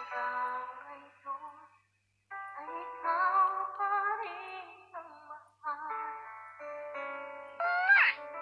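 A woman singing into a microphone, holding and bending notes, with a short break about two seconds in.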